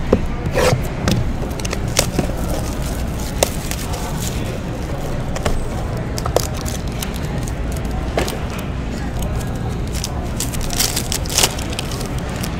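Hands handling a shrink-wrapped trading-card box and cards: scattered light clicks, taps and rustles of cardboard and plastic wrap, with a small flurry of clicks near the end, over a steady low hum.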